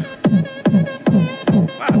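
Fiat Uno's car sound system playing an electronic dance beat loudly, with short falling-pitch kicks about four a second. The beat comes only from the midrange speakers: the deep bass is missing, which the owners take for burnt-out 15-inch woofers.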